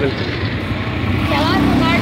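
Steady noise of kachoris deep-frying in a large karahi of hot oil, with a man's voice briefly a little past halfway.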